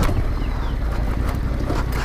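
Yamaha Ténéré adventure motorcycle's engine running steadily as it rides over a rocky trail, with a few faint knocks from stones under the wheels.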